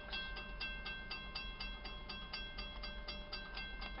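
Railroad grade-crossing bell ringing steadily, about four to five strikes a second, each strike leaving a ringing tone, over a low rumble.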